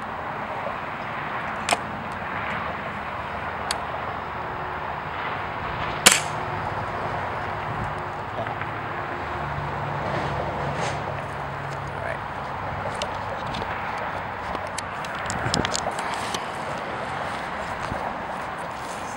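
A pellet gun fires once about six seconds in, a single sharp crack. There are a couple of faint clicks before it.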